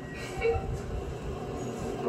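Steady low rumble with hiss, played through a television's speakers, with a slightly louder moment about a quarter of the way in.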